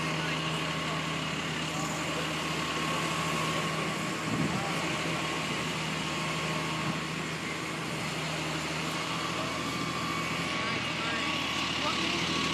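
A vehicle engine idling steadily, a constant low hum with a steady whine over street noise.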